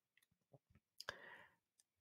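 Near silence in a pause between phrases of speech, broken by a few faint clicks, two of them close together about a second in.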